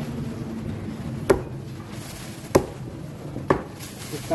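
A heavy chopping knife strikes through tuna flesh into a thick round wooden chopping block three times, each a sharp single chop roughly a second apart.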